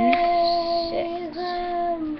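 A young girl's voice holding one long sung note, steady in pitch, with a brief dip a little over a second in.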